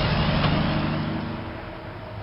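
A road vehicle's engine and tyre noise, a steady low hum under a rushing noise, fading slowly as it moves away.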